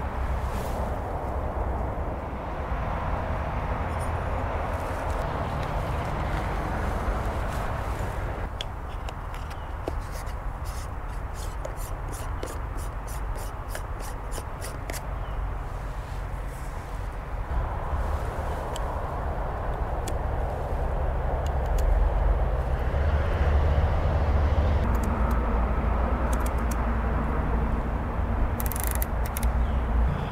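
Steady outdoor background noise with a low rumble, like wind on the microphone and distant traffic. About a third of the way in, a run of quick, evenly spaced ticks lasts several seconds.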